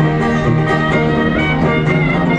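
Traditional jazz band playing together: sousaphone bass notes under trombone, with banjo strumming.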